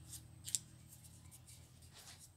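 Small sheet of paper being folded and creased by hand into a paper airplane: a few faint, crisp crackles, the sharpest about half a second in.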